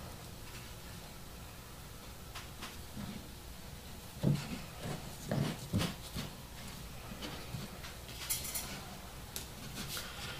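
Handling noise from a bar clamp being fitted and tightened on a glued wooden box: a few soft knocks in the middle and a brief scrape near the end.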